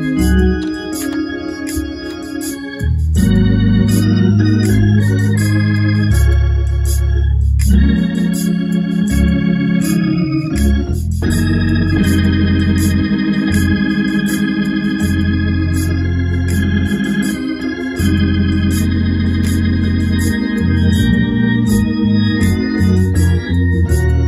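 Gospel backing track led by Hammond-style organ chords over a deep bass line, with a steady ticking beat; the music pauses briefly a few times between phrases.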